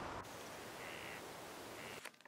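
Two short bird calls, about a second in and just before the end, over a steady outdoor background hiss.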